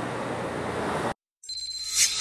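Steady plant machinery noise that cuts off abruptly about a second in; after a brief silence, a title-transition sound effect starts, with a steady high tone and a rising swoosh.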